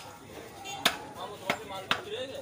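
Meat cleaver chopping goat leg on a wooden tree-stump block: three sharp chops, the first about a second in and the loudest, the next two about half a second apart.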